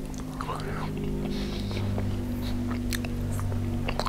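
Close-miked chewing of a mouthful of cabbage roll casserole, with scattered small wet mouth clicks, over a steady low hum.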